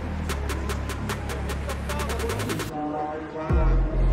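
Electronic background music: beats that get faster and faster in a build-up, a short break, then a loud bass drop about three and a half seconds in.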